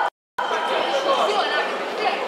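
A brief cut to silence at the very start, then indistinct chatter of several voices in a large hall.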